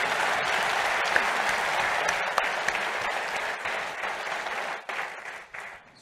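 Audience applauding, the clapping thinning out and fading away near the end.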